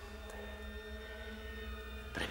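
Soft background music: a sustained, unchanging chord drone over a low rumble.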